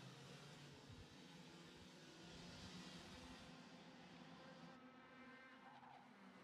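Faint buzz of IAME X30 125cc two-stroke kart engines running on the track.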